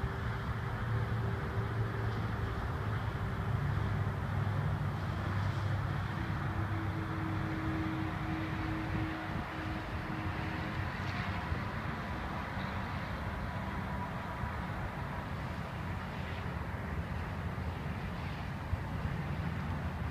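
Steady hum of road traffic, with low engine tones that slowly come and go as vehicles pass.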